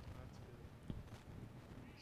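Quiet room tone in a pause between spoken phrases, with one faint click about a second in.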